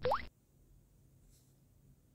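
A short rising blip from the phone's screen-reader feedback sound as the Open button is activated, then near silence.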